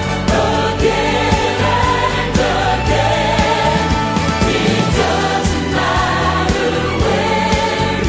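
Choir singing a Christian choral arrangement with instrumental accompaniment, the music running steadily.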